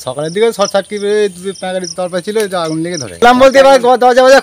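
A man speaking continuously, his voice the loudest sound; a faint steady high-pitched whine runs underneath.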